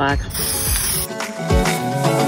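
A short burst of an aerosol can of Rust-Oleum 2X flat black spray paint, a high hiss that starts just after the beginning and cuts off about a second in, over background music.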